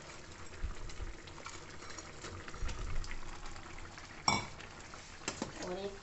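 Fried bottle-gourd koftas pushed from a steel bowl into a pan of simmering yogurt gravy: soft thuds as they drop in, small spoon and utensil clicks, and one sharp metallic clink of steel on the pan about four seconds in, over faint bubbling of the gravy.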